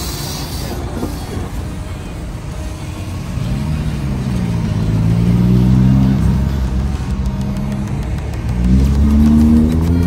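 Street traffic pulling away from an intersection: car engines rise in pitch as they accelerate. The loudest is a Subaru WRX's turbocharged flat-four passing close about six seconds in, and another car's engine revs up near the end.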